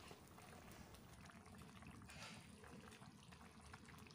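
Near silence: only the faint bubbling of a fish curry simmering in a kadai, with a few tiny ticks.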